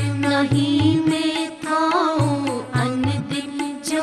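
Sikh devotional kirtan music: a melodic singing line over a steady held drone, with low drum strokes every half second or so.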